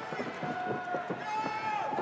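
Wrestling ring bell ringing on to start the match, one steady tone that holds through, over arena crowd murmur and the wrestlers' feet on the canvas.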